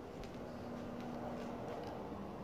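Quiet small-room tone: a faint steady hum with a few light clicks.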